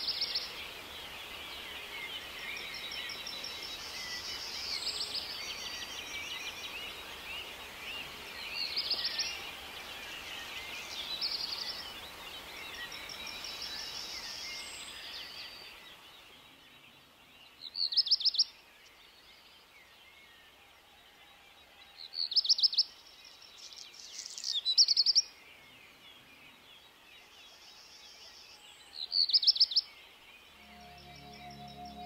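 Birdsong: a busy chorus of distant birds chirping, which drops away about halfway through. After that a single songbird sings a short, fast trill phrase four times, each about half a second to a second long and clearly louder than the chorus.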